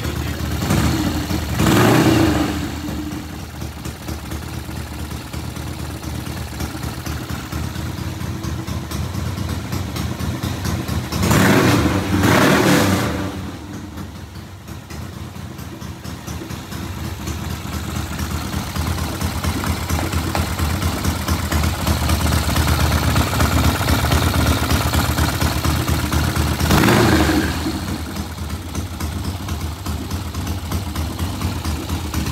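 1967 Triumph TR6's 650 cc parallel-twin engine idling, its throttle blipped up three times: about a second in, at around eleven to thirteen seconds, and near the end.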